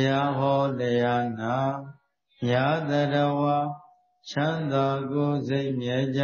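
A man chanting Buddhist Pali verses on a steady, held pitch, in three phrases of about two seconds each with short pauses between them.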